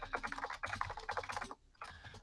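Computer keyboard typing: a quick run of keystrokes that stops about one and a half seconds in, followed by a few scattered key clicks near the end.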